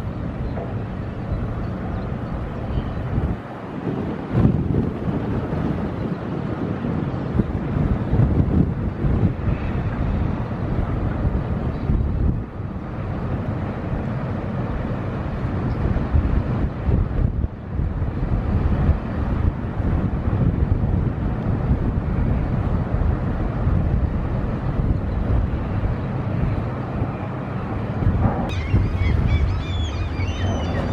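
Cargo ship's engine running steadily, with wind on the microphone.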